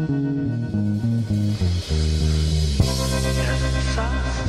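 Heavy punk rock song playing, with a bass guitar line stepping through notes under electric guitars.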